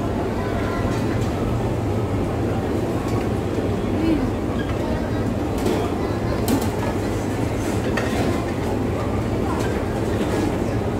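Busy restaurant din: steady background chatter over a constant low hum, with a few light clicks of serving tongs against steel buffet trays in the second half.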